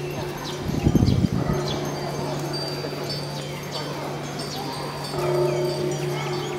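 Small pagoda wind bells tinkling in the breeze, many short, clear, high tones scattered irregularly. A low steady hum runs underneath, with a brief low rumble about a second in.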